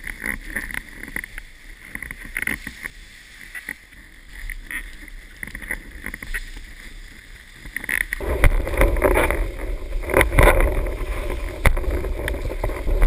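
Water rushing and splashing against a windsurf board under way, with wind buffeting the microphone; about eight seconds in it turns abruptly much louder and fuller.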